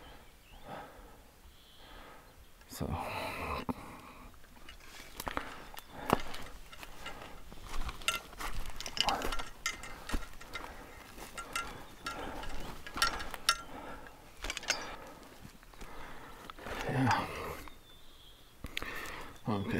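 Irregular clicks, knocks and rustling from moving about and handling camera gear, with a short vocal sound near the end.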